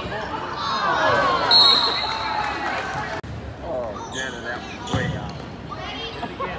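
Voices of players and spectators in a reverberant school gymnasium during a volleyball match. A short, steady referee's whistle blast comes about one and a half seconds in, and a sharp smack of a hit volleyball about five seconds in.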